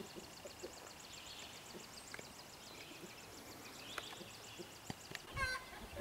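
Faint outdoor ambience with a small bird's fast, high trill lasting about four seconds, then a short call from a chicken near the end.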